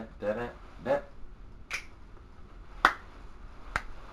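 A man briefly sings "da da", then three sharp clicks, about a second apart, the second the loudest.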